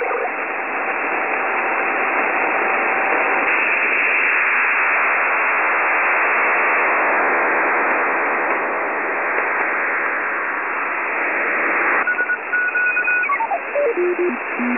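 Radio static: a steady, narrow-band hiss like a set tuned between stations, with a faint held tone under it for the first few seconds. About two seconds before the end the hiss breaks off and a series of short electronic beeps steps down in pitch.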